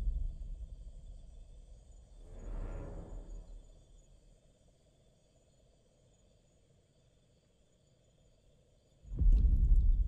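Deep, booming footfalls of the Tyrannosaurus rex as the film's impact-tremor effect: one thud about two and a half seconds in that dies away slowly, then a much louder thud about nine seconds in, as the ground shakes with each step.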